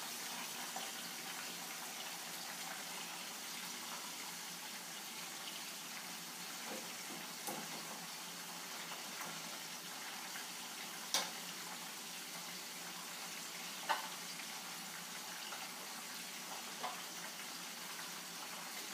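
Catfish frying in oil under a glass lid in a skillet: a steady sizzle, with a few brief sharp clicks now and then.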